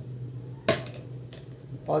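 A single sharp knock of a plastic measuring jug being handled, about a third of the way in, against a faint background hum. A woman starts speaking near the end.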